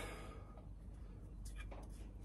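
Quiet room tone with a low steady hum, and a few faint clicks near the end.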